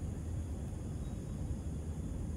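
Steady outdoor night ambience picked up by a smartphone's microphone: a low rumble under an even hiss, with faint steady high-pitched tones.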